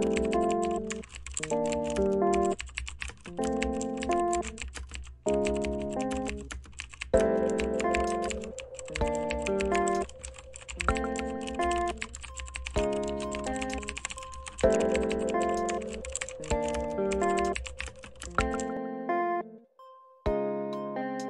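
Rapid computer-keyboard typing, a fast run of key clicks that stops shortly before the end, over background music of chords changing about every two seconds.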